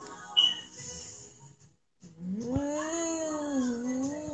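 A short high beep about half a second in. Then, from about halfway, a long drawn-out vocal call with a wavering pitch that rises and then slowly falls over about two seconds.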